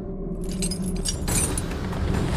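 Metal chains rattling and clinking over a steady low drone: a produced sound effect in a TV programme's title sting. The clinks are brightest about half a second to a second and a half in.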